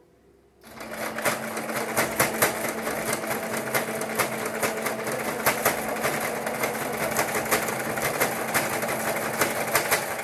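Singer Sew Mate electric sewing machine starting up just under a second in and then stitching steadily, a steady motor hum under fast ticking from the needle strokes.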